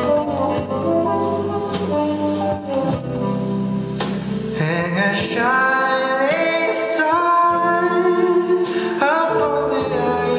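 Male lead vocalist singing a slow Christmas ballad live with the band accompanying, sliding up into several held notes.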